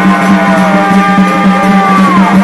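Live Chhau dance music: a reed-pipe melody in long held notes over steady, fast drumming.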